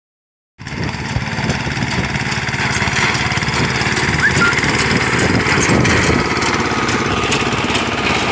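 Four-wheel reaper binder running steadily under load as it cuts standing wheat: a loud small-engine drone with a quick mechanical clatter from the cutter and binding mechanism.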